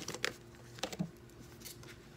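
A few light clicks and taps of cards being handled on a table, scattered over the two seconds, with a faint steady hum underneath.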